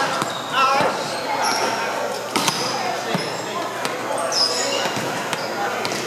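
Volleyballs being struck and bouncing on a wooden gym floor amid many voices, all echoing in a large gymnasium. Sharp ball impacts come at irregular moments, the loudest about two and a half seconds in, with a few short high squeaks.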